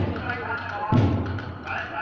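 A parade drum, most likely a marching band's bass drum, beating slowly about once a second between tunes, over the chatter of a street crowd.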